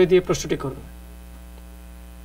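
A man's voice trails off in the first second, then a steady electrical mains hum with a row of faint even tones, heard on an open telephone line just before a caller speaks.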